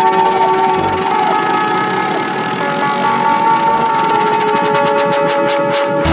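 Progressive goa trance in a breakdown: the kick and bass drop out, leaving sustained synth chord tones over a fast ticking percussion roll that quickens toward the end as a build-up.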